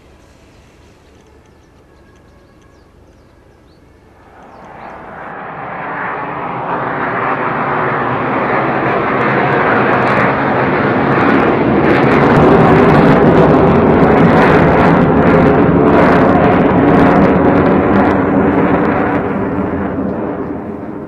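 Military fighter jet flying over: its engine roar swells up from about four seconds in, is loudest past the middle, and begins to fade away near the end.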